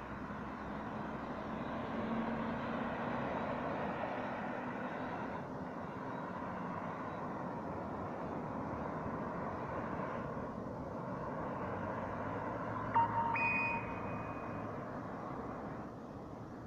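Cars driving around a roundabout, their engine and tyre noise rising and easing as they pass. About three-quarters of the way through there is a sharp click and a brief high-pitched tone, the loudest moment.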